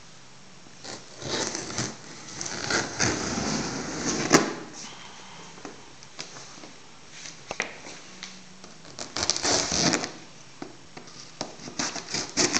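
Knife blade slitting the packing tape on a cardboard box: irregular bursts of scraping and rasping against the cardboard, with a sharp click about four seconds in and another run of scraping near ten seconds.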